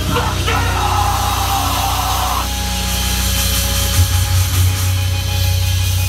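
Live heavy band played loud through a club PA: distorted guitars, bass and drums in a dense wall of sound, recorded on a phone's microphone.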